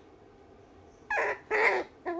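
Toy poodle puppy giving two short high whimpers, one about a second in and one near the end, in protest at having its nails clipped.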